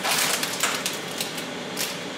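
Plastic food packaging crinkling and crackling as it is peeled open and handled, in a few short bursts, the loudest right at the start.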